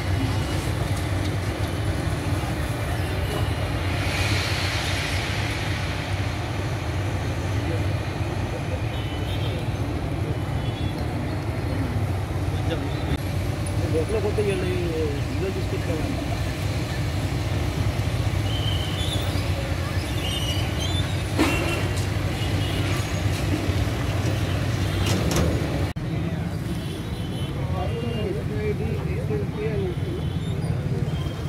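Diesel engines of heavy demolition excavators running steadily, with concrete breaking. A couple of sharp cracks of breaking concrete come a little after two-thirds of the way through.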